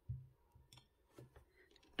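Near silence, broken only by a few faint, light ticks and taps.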